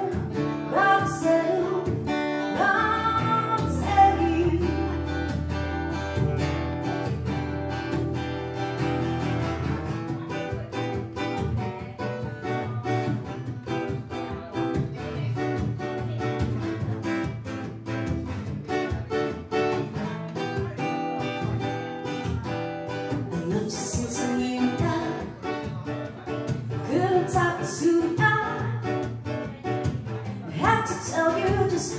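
A woman singing live to her own strummed acoustic guitar. The guitar carries on alone through the middle, and the voice comes back near the end.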